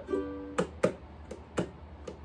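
Ukulele strummed by hand: a chord rings briefly, then about four short, sharp strums follow.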